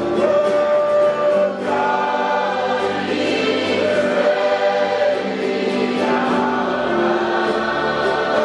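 A large group of voices singing a gospel worship song together in long, held notes, over a light steady beat.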